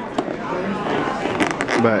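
Clear plastic container lid being handled and pressed down by hand, giving a single click early and then a quick cluster of sharp crackling clicks about a second and a half in, over restaurant background chatter.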